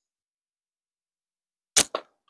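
Near silence, then near the end a slingshot shot is released: a sharp snap as the flat latex bands of the Cygnus Bold slingshot whip forward, followed a moment later by a second, smaller snap.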